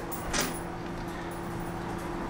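Quiet room tone with a steady low hum, and one brief soft rustle about a third of a second in, as of the rubber gasket being handled.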